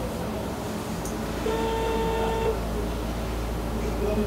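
Telephone ringback tone from a mobile phone's loudspeaker: one steady beep about a second long, starting about one and a half seconds in, while the dialled number rings.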